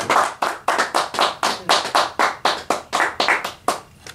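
A quick, steady run of sharp percussive strokes, about four a second, each with a short hissing tail. They thin out near the end and stop.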